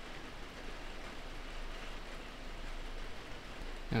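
Rain falling on the workshop roof overhead, a steady even hiss.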